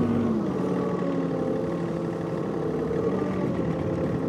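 John Deere 3046R compact tractor's diesel engine running steadily while clearing snow with the loader; its pitch drops a step about a third of a second in, then holds even.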